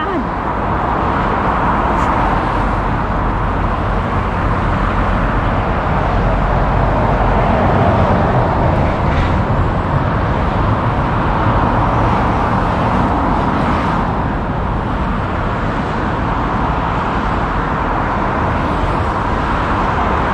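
Steady road traffic noise from cars passing on the road below, swelling and easing gently, with wind rumbling on the microphone.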